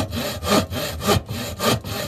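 Rhythmic rasping strokes, about two a second, cut in abruptly between speech segments as a transition sound effect.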